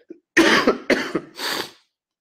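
A man coughing into his fist, three or four coughs in quick succession, loud and close.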